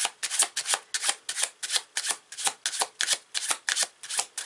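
A deck of tarot cards being shuffled by hand, packets of cards striking together in a steady run of about five short snaps a second.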